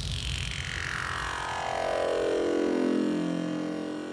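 A long synthesized sweep in an electronic dance track, gliding steadily down in pitch from very high to low with no beat under it: a breakdown 'downlifter' effect.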